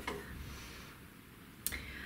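Quiet room tone with a faint low hum and a single soft click near the end.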